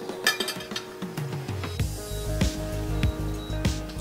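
Knife and fork clinking against a plate several times while a portion of lasagna is cut, over background music.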